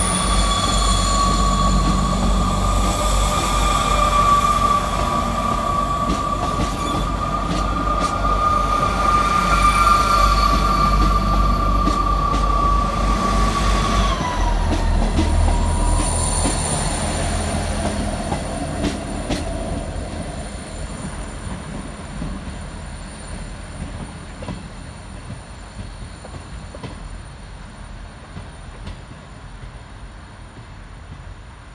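South Western Railway diesel multiple unit moving along the platform, engine rumbling under a steady high whine. About halfway through the whine dips slightly in pitch and the rumble changes, then the train's sound fades steadily as it draws away.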